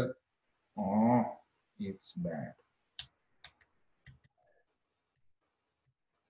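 Computer keyboard keystrokes: a handful of sharp single clicks, about four or five, between three and four and a half seconds in.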